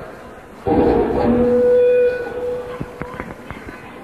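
A single voice lets out a loud held shout lasting about a second and a half, starting suddenly under a second in, over the steady hiss of an old audience tape.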